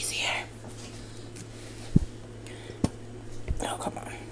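A breathy sound at the start, then three soft knocks about two, three and three and a half seconds in. They come from handling a plastic squeeze bottle of honey Dijon mustard held upside down over a steel measuring cup, with the mustard slow to come out.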